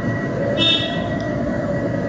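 Steady rumbling noise, with a short high ringing tone about half a second in.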